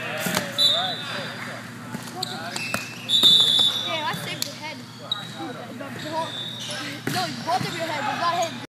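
A volleyball struck and bounced on an indoor court, a few sharp separate thwacks among the players' voices.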